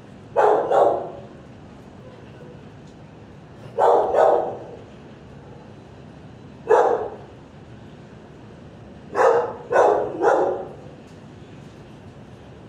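A dog barking in short groups: two barks, then two, then one, then three in quick succession.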